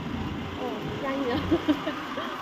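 Steady low riding noise of a moving two-wheeler, engine and road rumble mixed with air rushing past the microphone, with soft voices faintly heard over it.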